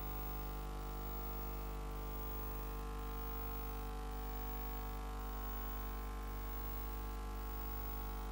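Steady electrical mains hum at about 50 Hz with a buzzing stack of overtones, unchanging throughout, from the hall's sound system or recording feed.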